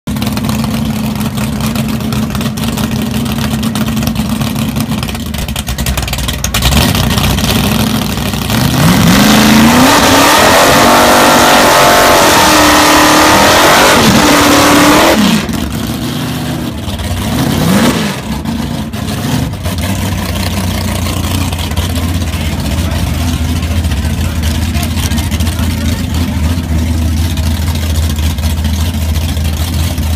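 Big-block Chevy V8 in a Monte Carlo drag car idling, then revved hard through a burnout from about 9 to 15 seconds, its pitch sweeping up and down over loud tire squeal. It cuts back suddenly, gives one more rev a few seconds later, and settles into a steady low idle.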